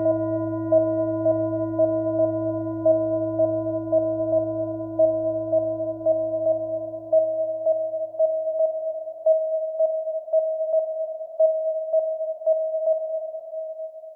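An outro drone of steady, pure electronic tones, with one mid-pitched tone pulsing about twice a second. The low hum and lower tones fade out about halfway through. The pulsing tone then fades away near the end.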